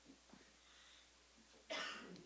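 A single short cough near the end, against quiet room tone.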